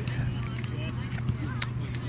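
Faint voices in the background over a steady low hum, with scattered light clicks.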